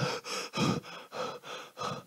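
A man panting into a microphone: about five quick, heavy breaths in and out, acted out as a runner arriving out of breath.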